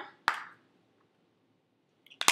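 Near silence broken by a single sharp click of a plastic blush compact being handled, just after the start.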